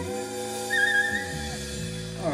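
Live blues band holding its final notes as a song ends: electric guitars and saxophone sustain steady pitches, with a brief wavering high note about a second in.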